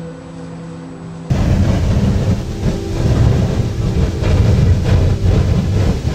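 A geyser erupting: a loud, rough rushing roar of water and steam with a deep rumble. It cuts in suddenly about a second in, after a steady low hum.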